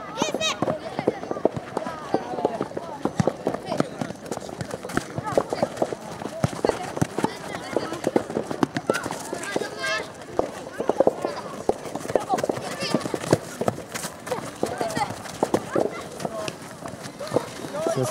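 Children's voices calling and shouting across an open soccer pitch during play, with many scattered short knocks and thuds.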